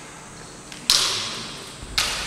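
Two sharp cracks of kendo strikes, bamboo shinai hitting, about a second apart, each ringing on in the echo of a large wooden-floored hall.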